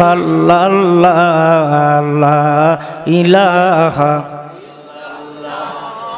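A man chanting Islamic zikr into a microphone, in long held melodic notes. The chant breaks off about four seconds in, and the last two seconds are much quieter.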